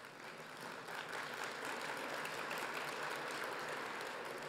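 Audience applauding in a large hall, building up about a second in and then holding steady.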